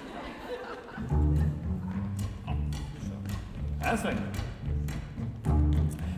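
Double bass plucked in a steady, repeating low blues bass line that starts about a second in, roughly two notes a second.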